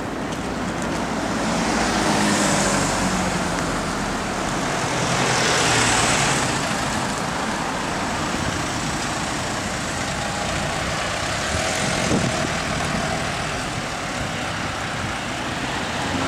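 Road traffic going by close at hand: cars and a van driving past, their engine and tyre noise swelling as one passes about two seconds in and again around six seconds. A short click sounds about twelve seconds in.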